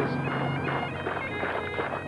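Bagpipes playing in the background: a steady drone with held melody notes changing pitch above it.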